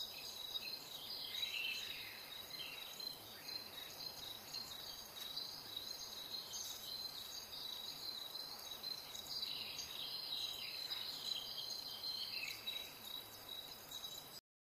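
AI-generated night rainforest ambience from Stable Audio Open 1.0: a steady, high insect chirring like crickets over a faint hiss, with scattered bird-like chirps.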